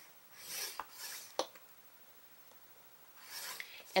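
A scoring tool drawn along the groove of a paper scoreboard, pressing a fold line into heavy kraft cardstock. It makes one rasping stroke about half a second in that ends with a sharp click, then a softer rub near the end.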